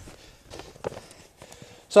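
Faint rustling and a few soft knocks as a large grow bag and flattened cardboard are shifted into place by hand.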